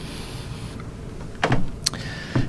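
A pause between sentences: steady room noise with a faint hiss, a brief soft sound about one and a half seconds in, and a sharp click just before the end.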